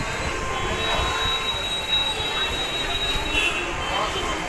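A train moving through the station below, its wheels squealing in one long, steady high note over a continuous rushing rumble.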